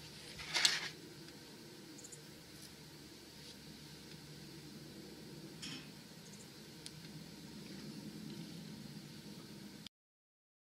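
Faint handling sounds as brined trout fillets are laid onto the wire racks of an electric smoker: a brief rustle about half a second in, then a few soft clicks over a steady low hiss.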